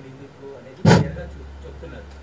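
A single loud thump through the microphone about a second in, and a steady low electrical hum that starts with it and carries on.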